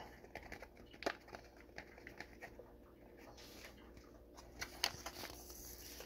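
Faint crinkling and scattered clicks of a paper cheese-powder packet being shaken out and crumpled in the hand, a little louder about five seconds in.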